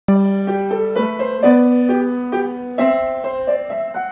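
Upright piano playing a minuet: low held bass notes under a melody of single notes struck at an even pace, the first chord starting abruptly.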